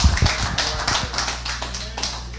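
Congregation clapping in a loose patter, with voices calling out underneath. There are a couple of dull thumps right at the start.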